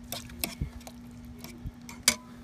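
A few light, irregular clicks and knocks of a metal utensil against an enamelware roasting pan, over a steady low hum.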